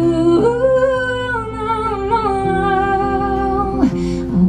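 A woman's voice holding a long sung note with vibrato, stepping down in pitch and sliding down just before the end, over sustained acoustic guitar chords.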